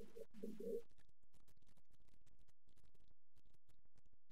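A dove cooing: a short run of about four low coos within the first second, faint under the room sound.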